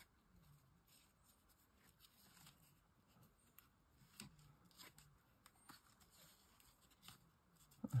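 Near silence with faint light taps and rustles of card and paper being handled and pressed into place.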